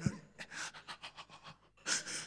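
A man panting hard into a handheld microphone: rapid, heavy breaths with a louder gasp near the end. He is acting out the laboured breathing of someone gripped by fear.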